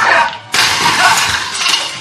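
A sudden loud crash with breaking, starting about half a second in and dying away over a second and a half.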